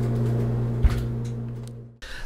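A steady low hum, with a single sharp click a little under a second in; the hum fades away near the end.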